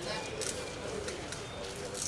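Scissors cutting through the wrapping on a small box: two brief, soft snips over a low murmur of voices.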